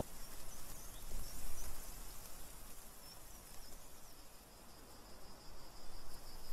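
Faint outdoor ambience of crickets chirping: scattered short high chirps, then a steady high trill that sets in about two-thirds of the way through.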